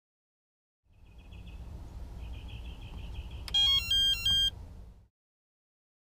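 Electronic phone ringtone. A faint warbling trill is followed by three short, louder beeps stepping in pitch, over a low rumble. It starts about a second in and cuts off about five seconds in.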